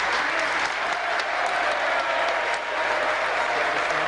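A large crowd applauding steadily, a dense sustained clapping.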